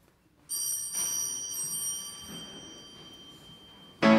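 A small high-pitched bell rings out about half a second in, struck again about half a second later, then fades away slowly. It signals the start of the mass, and the congregation stands.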